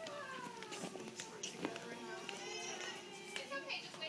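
Background chatter of children and adults at play, indistinct and fairly quiet, with a few light knocks.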